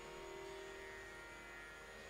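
Tanpura drone sounding faintly and steadily, its strings' tones held without a break, over a low electrical hum.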